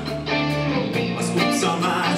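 A live rock band playing an instrumental passage: electric guitars over bass and drums, with the bass moving to a new note about a second in.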